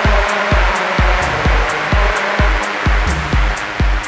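Electronic dance music played on synthesizers. A steady kick drum thumps a little over twice a second, with hi-hat ticks at the same pace, under a rushing, noise-like synth wash.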